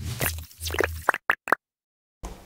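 Cartoon sound effects of an animated logo intro: a run of squelchy plops with low thumps, then three quick sharp clicks a little after a second in.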